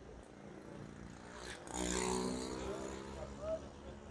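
A motor vehicle's engine passing close by, swelling to its loudest about two seconds in and then fading, with faint voices in the background.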